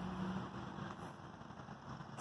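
Faint steady background noise with a low rumble and no distinct event.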